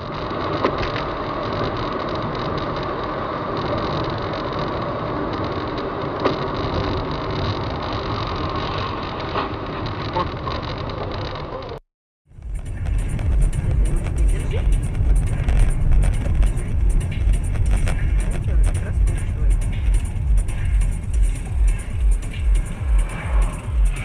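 Steady vehicle noise recorded by a dashcam. After a brief cut it gives way to music with a heavy, regular bass beat of about two beats a second.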